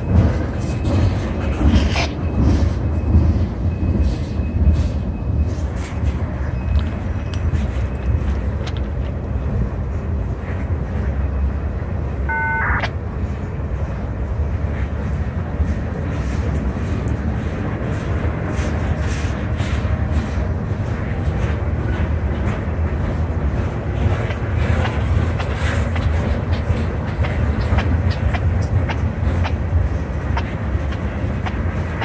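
Freight train of tank cars rolling steadily past: a continuous low rumble of wheels on rail, with frequent sharp clicks and clanks from the cars. A brief high-pitched tone sounds about twelve seconds in.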